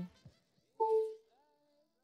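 A woman's brief, held "ooh" about a second in, with silence around it.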